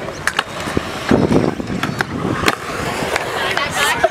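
Hard wheels rolling and grinding over skatepark concrete, with a rumble about a second in and several sharp clacks of deck and wheels striking the surface.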